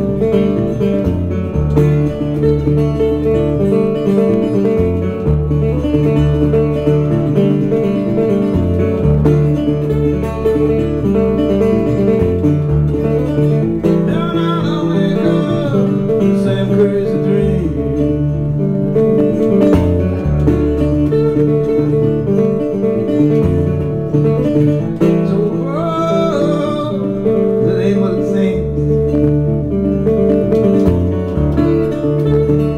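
Solo acoustic guitar fingerpicked in country-blues style, a repeating bass line picked under the treble notes, played live through a microphone.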